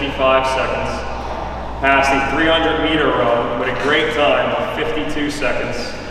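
A man speaking continuously, with a short pause a little under two seconds in.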